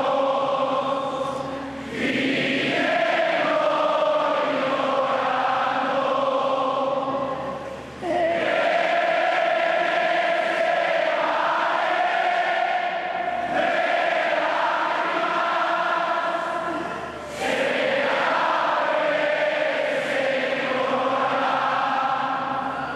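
A large crowd singing together in unison, in long sustained phrases broken by short pauses about 2, 8 and 17 seconds in.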